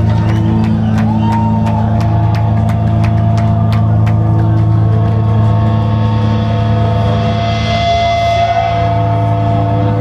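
Live rock band playing a slow, droning passage: a loud, sustained low note with long held tones above it. Light, regular ticks run through the first half and fade out.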